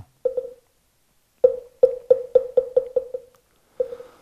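Moktak (Korean Buddhist wooden fish) struck: one knock, then after a pause a run of strokes that come faster and faster, and a single last stroke near the end. It is the accelerating roll that opens a chanted mantra.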